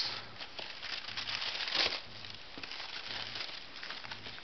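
Tissue paper rustling and crinkling in a cardboard shoebox as a sneaker is unwrapped, in an irregular run of small crackles with a louder crinkle a little under two seconds in.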